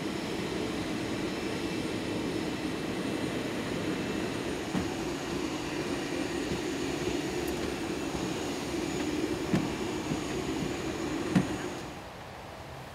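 Jet airliner running on the ground on an airport apron: a steady rumble and hum with faint steady high tones. A few faint knocks, the loudest near the end.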